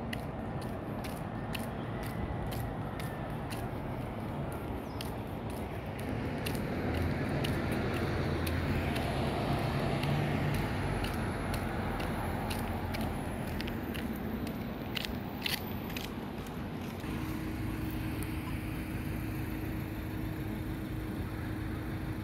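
Street traffic: a car drives past, loudest in the middle stretch, over a steady hum of the road, with a low steady engine tone in the last few seconds and small clicks scattered through the first part.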